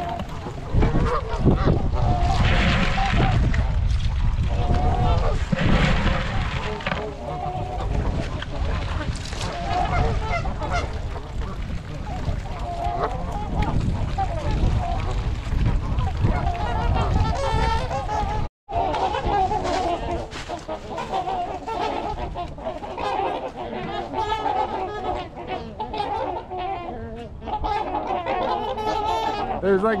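A mixed flock of Canada geese and trumpeter swans honking continuously, many overlapping calls at once. A low rumble sits under the first half, and the sound breaks off for an instant just past halfway.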